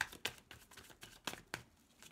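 A tarot deck being shuffled by hand: a run of soft, irregular card clicks and slaps.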